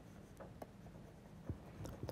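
Faint taps and light scratching of a pen writing by hand, a few soft ticks as strokes land, one a little louder about one and a half seconds in.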